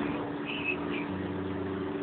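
A steady low hum with faint background noise, with a few brief faint high-pitched sounds about half a second and a second in.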